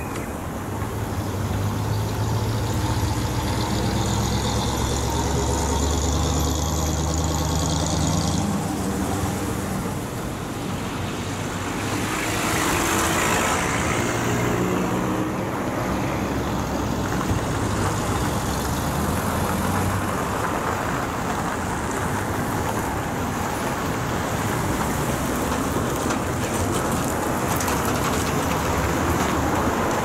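Road traffic on a snowy street: car engines and tyres running steadily, with one vehicle passing close and swelling loudest about halfway through.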